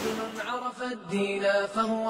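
Background music: a single voice chanting in long held notes that slide from one pitch to the next.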